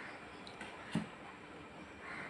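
Faint eating sounds: fingers squishing rice on a steel plate, with one soft click about a second in.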